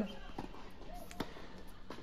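A few faint, sharp pops of a tennis ball being struck and bouncing, the clearest a little past halfway, over low room noise.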